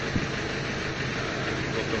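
Steady background noise of running machinery, like an idling engine, with a man's brief hesitant "uh" near the end.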